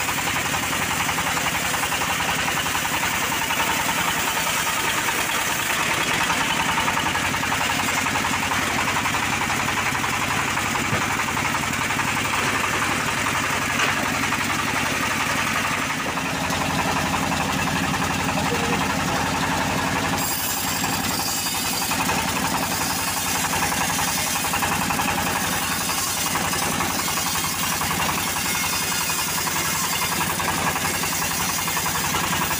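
Homemade band sawmill running steadily, a low machine hum under the hiss of the band blade sawing lengthwise through a teak log. The sound of the cut changes a little past halfway.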